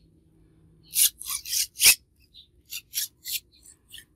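Vinyl LP sliding out of its paper lyric inner sleeve: a string of short papery rustles and scrapes starting about a second in, with one light knock about two seconds in.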